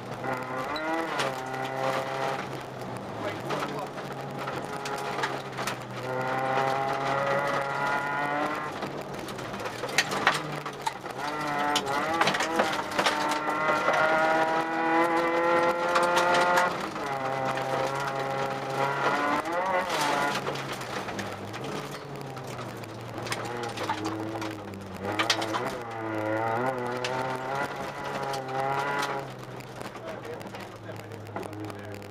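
Volkswagen Jetta Mk2 rally car's engine heard from inside the cabin, running hard on a gravel stage: its pitch climbs steadily for several seconds at a time, then drops back at each gear change. A few sharp knocks are heard, about 10 and 20 seconds in. The engine is quieter near the end as the car slows.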